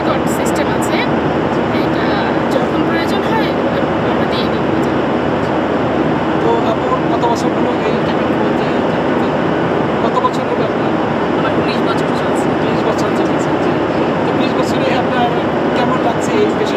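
Steady airliner cabin noise, an even rushing hum, with voices talking over it.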